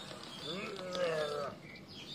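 A man's drawn-out wordless vocal sound, lasting about a second, that rises in pitch and then holds, with faint bird chirps.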